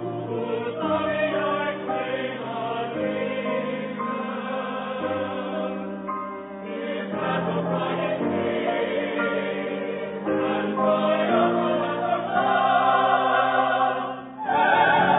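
Mixed chorus singing slow, held chords in a classical choral work, swelling louder in the last few seconds.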